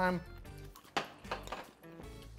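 A metal utensil clinks once against a ceramic bowl about a second in, followed by a couple of lighter ticks, as someone eats from it.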